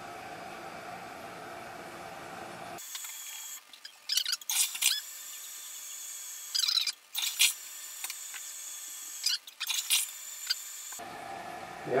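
Toilet tank refilling with a steady hiss, then the toilet flushed three times in a sped-up stretch that sounds high and thin: three clusters of loud bursts a couple of seconds apart.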